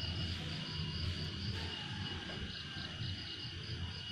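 Insects, crickets by their sound, chirping in a steady, regular pulsing rhythm with a thin continuous high tone beneath, over a low rumble.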